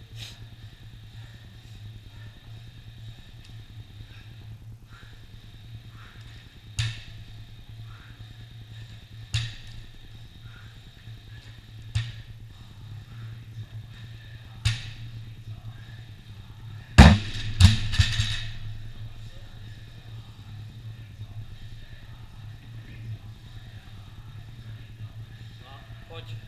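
Loaded barbell with black rubber bumper plates knocking down on a rubber gym floor four times, about two and a half seconds apart. About two-thirds of the way in comes the loudest sound: the barbell dropped to the floor with a heavy crash and a couple of quick bounces. A steady low hum runs underneath.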